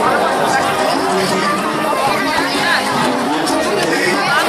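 Crowd chatter and many overlapping voices over salsa music, at a steady loud level.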